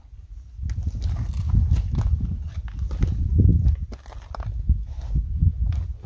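Footsteps crunching and scuffing over dry, stony ground, a string of irregular clicks and crunches over a low, uneven rumble on the microphone.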